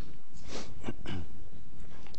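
A person coughing: about three quick coughs in a row, roughly a third of a second apart.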